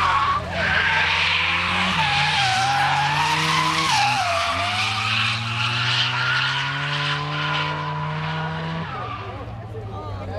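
Drift car's engine held at high revs through a long sideways slide, with the tyres squealing. The revs dip briefly about two seconds in and again around four seconds, then climb slowly until the throttle is lifted near the end.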